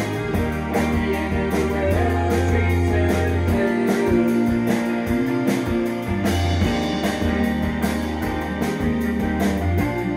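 Live indie rock band playing: electric guitars over a bass line and a steady drum beat.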